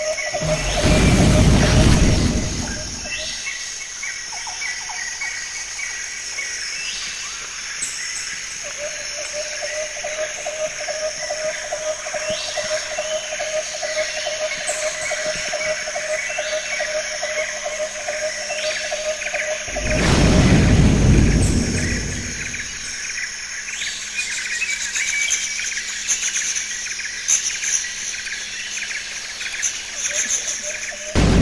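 Birds chirping over steady droning tones, broken twice by a loud low rushing burst lasting a couple of seconds: once about a second in and again about twenty seconds in.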